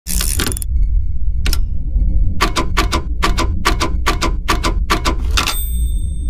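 Sound effects of an animated YouTube-logo intro: a short burst of noise at the start, a single sharp click, then a quick run of about a dozen sharp clicks, roughly four a second, over a steady low hum.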